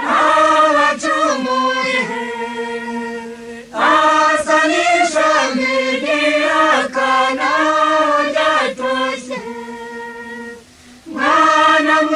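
Choir singing a Rwandan song in Kinyarwanda, in sustained phrases with a brief break about four seconds in and another shortly before the end.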